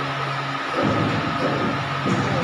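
Hydraulic three-roller pipe bending machine running, with a steady whine over a loud noisy din. A low hum cuts off under a second in and gives way to irregular low rumbling.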